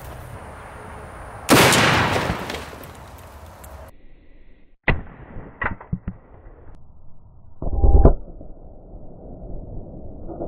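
A single .50 BMG rifle shot about a second and a half in, a sharp blast trailing off over about two seconds. After a cut come a few sharp knocks and, near eight seconds, a second loud, deep boom.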